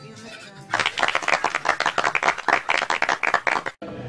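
Faint music, then a loud, fast, even clatter of sharp strokes, about ten a second, for about three seconds, which cuts off abruptly shortly before the end.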